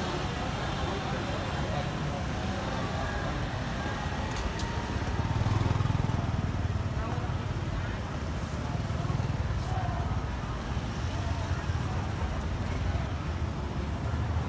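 Street traffic noise: motor vehicle engines running and passing, swelling louder about five to seven seconds in and again a little later, with voices in the background.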